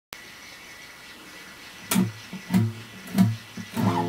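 Acoustic bass guitar plucking four single low notes, each about two-thirds of a second apart, starting about two seconds in over a faint hiss with a thin steady high tone.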